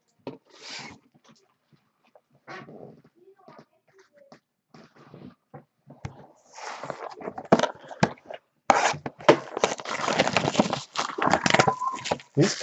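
Trading cards and their plastic pack wrappers being handled: scattered light clicks and rustles at first, then from about the middle a dense, loud run of crinkling and crackling as a pack is torn open and worked through.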